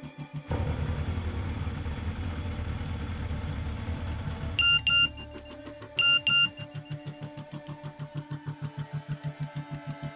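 Background music with a steady low pulsing beat. About halfway through, a BlackBerry phone's message alert sounds twice, each time as a quick double beep, the two pairs about a second and a half apart.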